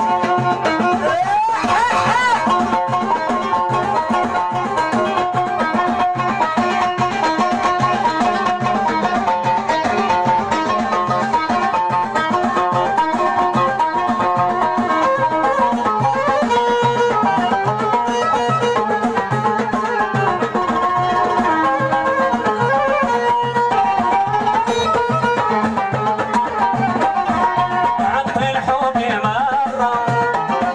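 Live Moroccan folk music: a violin, held upright and bowed, plays a sliding melody over a steady, repeating hand-drum rhythm.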